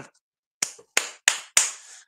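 A person clapping their hands four times in quick succession, in excited applause for a donation.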